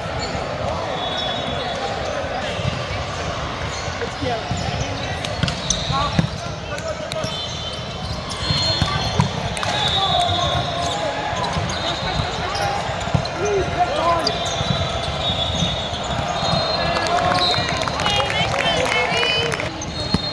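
Indoor volleyball in a large sports hall: the ball being struck and bouncing, with voices of players and spectators throughout. Short high-pitched squeaks come and go, most in a cluster near the end.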